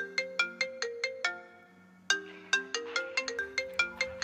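A mobile phone ringtone playing a quick melody of bell-like notes in two phrases. The first fades out about a second in, and the second starts about two seconds in.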